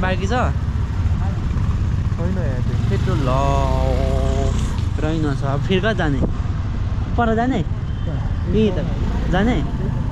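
A person talking and calling out over the steady low rumble of a motorcycle that is running with riders aboard.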